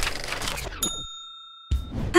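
Logo sound effect: a fading musical swoosh, then a single bright bell-like ding about halfway through that rings steadily for under a second and cuts off abruptly.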